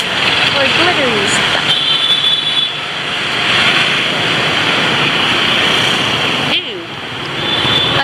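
Street ambience of dense motorbike and road traffic noise mixed with people's voices. It drops briefly about six and a half seconds in.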